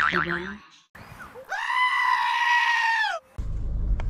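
A shrill, high cry held steady for nearly two seconds, from a meme sound effect, dipping in pitch as it cuts off. Just before the end a low, steady rumble of the car's engine idling in Park is heard from inside the cabin.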